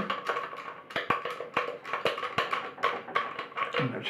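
Irregular small clicks and taps, several a second, from a wheelchair footrest's metal tube and its threaded bolt being handled on a table.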